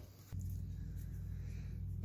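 A steady low hum with no clear pitch changes, starting about a third of a second in after a brief quiet moment.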